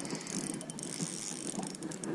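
Spinning reel ticking and whirring in rapid fine clicks while a hooked smallmouth bass is played on the line.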